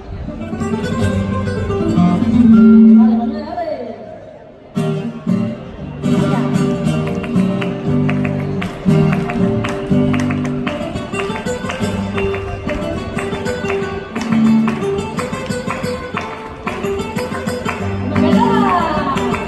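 A woman singing flamenco cante in long bending, ornamented lines, accompanied by a flamenco guitar. The guitar dips briefly and comes back in about five seconds in with strong, rapid strummed chords under the voice.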